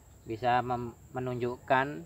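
A man's voice in three short, drawn-out phrases over an insect's steady high-pitched trill that runs without a break.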